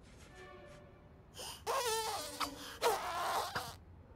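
A cartoon cat whimpering and wailing pleadingly: two wavering, trembling cries starting about one and a half seconds in, over soft background music.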